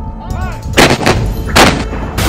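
Cinematic trailer sound effects: two loud, sharp gunshot-like hits, the first a little under a second in and the second about a second and a half in, over a dark musical sound bed.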